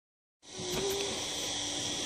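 Steady, high-pitched chorus of insects singing, starting about half a second in.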